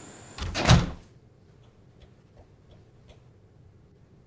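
A door thudding shut about half a second in, a single heavy knock with a deep low end, followed by quiet room tone with a few faint clicks.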